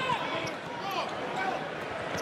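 Courtside sound of a basketball game on a hardwood floor: a ball being dribbled, with short sneaker squeaks over the steady murmur of the arena crowd.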